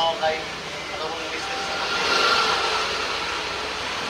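A vehicle passing on the street, its engine and tyre noise swelling to its loudest a little after two seconds and then easing off, with a few words of a man's voice at the very start.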